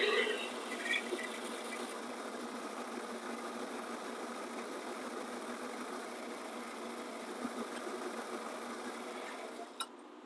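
Metal lathe running steadily while a 6 mm twist drill in the tailstock chuck bores into the end of a steel rod, ahead of reaming the hole. The running sound cuts off with a click just before the end.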